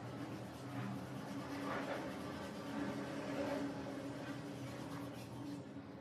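Soft, scratchy rustle of cotton yarn drawn over a metal crochet hook as half double crochet stitches are worked, swelling now and then, over a steady low hum.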